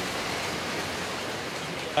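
Recycling-plant sorting machinery running: a steady rushing noise of paper and containers tumbling over a spinning-disc screen.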